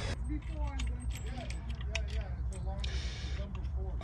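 Light metallic clicks and rattles of a battery shunt and its brass terminal hardware being handled and set against a plywood panel, with a brief hiss about three seconds in.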